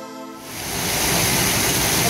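The last sustained chord of a logo jingle fades out; about half a second in, a steady rushing outdoor noise rises and holds.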